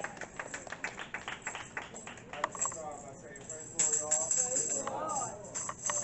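Tambourine beaten in a quick, even rhythm, about five strokes a second, then shaken into a bright jingle near the end, with voices over it.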